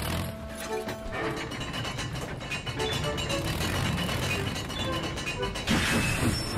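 Cartoon background music over the mechanical running of a sound-effect steam locomotive passing by, with a rush of steam hiss near the end.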